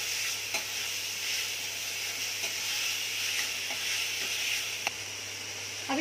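Chopped onion, tomato and green chilli masala frying in hot mustard oil in a steel kadhai: a steady sizzle, with a steel spoon scraping and clicking against the pan a couple of times as it is stirred.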